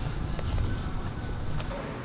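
Low rumble of outdoor street noise: traffic and wind on the microphone, with a few faint clicks.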